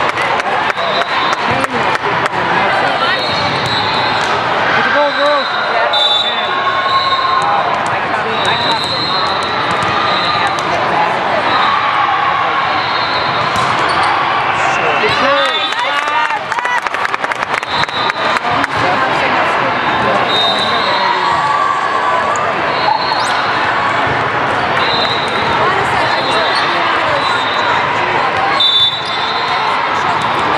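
Volleyball gym hall sound: volleyballs being hit and bouncing on the court with sharp, repeated knocks, under steady chatter and calls from players and spectators, all echoing in the large hall.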